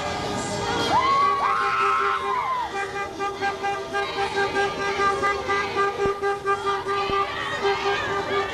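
Car horns honking in a passing motorcade, with a longer held blast about a second in, over a crowd's voices.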